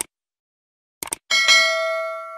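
Subscribe-button sound effect: a click, then a quick double click about a second in. A bell chime of several tones follows, ringing and slowly fading.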